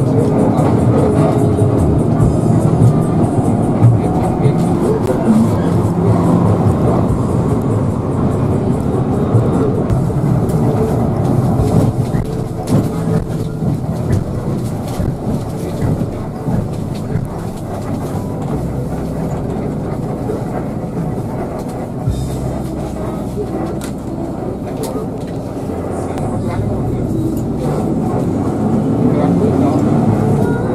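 Cabin noise inside a moving Hino RK8 coach: engine and road rumble, with music and singing playing from the bus's onboard TV. The sound is quieter in the second half as the bus slows toward a toll gate.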